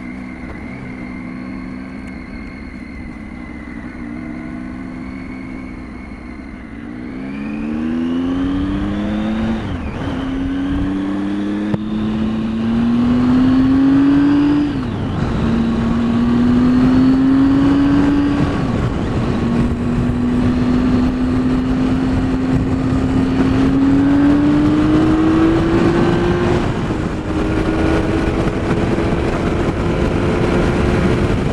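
Triumph Tiger 800 XCx's three-cylinder engine running at a low, steady speed, then accelerating from about seven seconds in through several upshifts. Its pitch rises in each gear and drops sharply at each shift, before it settles into a steady higher note. Wind noise on the microphone grows with the speed.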